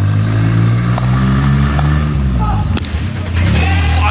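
A motor vehicle's engine passing close by on the road, its pitch rising and then falling, over a steady low hum. A single sharp crack comes near the end, a cricket bat striking a tennis-taped ball.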